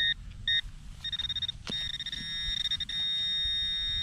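Handheld metal-detecting pinpointer sounding on a target in the dug hole: two short electronic beeps, a quick stutter of beeps, then one long steady beep that holds as the probe sits on the metal.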